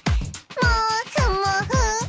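Upbeat J-pop anime ending song: a high, girlish sung vocal over a steady kick-drum beat, about two beats a second.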